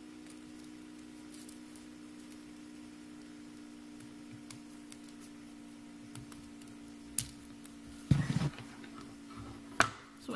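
Small scissors cutting through a thick stack of accordion-folded paper: a few sparse, quiet snips and clicks, with a louder burst of paper noise a little after eight seconds in. A steady low hum lies under it.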